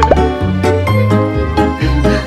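Upbeat background music with a bass line that steps between notes about twice a second under a melody. A short cartoon-style pop sound effect comes right at the start.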